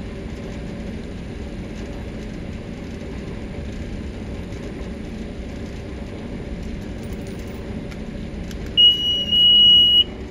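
A steady low background rumble, then near the end a loud, high-pitched electronic beep lasting about a second as the DigiTrak Mark V locator receiver powers on.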